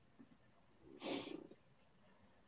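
A short puff of breath into a microphone about a second in, otherwise near quiet.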